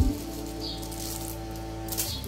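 Background music with steady held notes.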